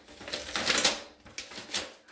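Paper envelope being torn open by hand, in several irregular ripping and rustling bursts, the loudest a little under a second in.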